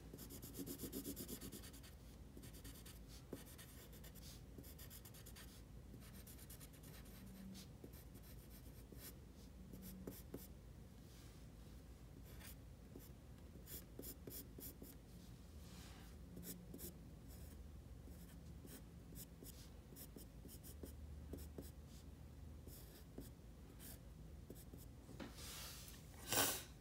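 Faint scratching of a pencil on paper in many short, quick sketching strokes, starting and stopping throughout.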